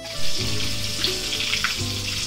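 Battered green chilli fritters deep-frying in hot oil, a steady sizzling hiss that starts suddenly right at the beginning.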